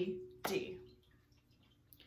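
Hand claps keeping a rhythm while a woman chants the note name 'D' on each beat; the last clap-and-'D' comes about half a second in.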